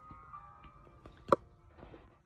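A single sharp knock with a brief ringing tone about a second in, loud against a quiet background of faint steady tones; an unexplained noise that strikes the listener as weird.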